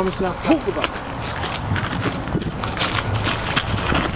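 Several people's feet scuffling and crunching irregularly on a gravel path strewn with leaves as they struggle together, with clothing rustling and a brief voice sound near the start.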